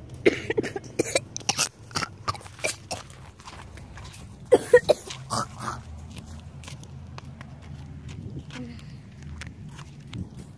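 Clatter and knocks of plastic bottles and cardboard being handled in a plastic recycling bin over the first few seconds, then a brief cough about four and a half seconds in. A faint low hum follows.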